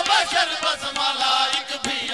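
Urdu devotional qaseeda chanted by a male voice in a melodic recitation style, over a steady held-tone accompaniment with frequent short percussive taps.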